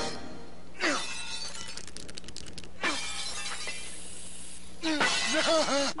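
Cartoon sound effects: two quick falling whistle-like sweeps about two seconds apart, with a burst of rapid clatter between them, then a run of short rising-and-falling pitched sounds in the last second.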